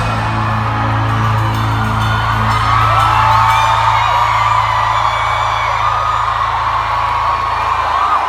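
A live rock band holding one deep note that rings on steadily, while a concert crowd screams and whoops over it.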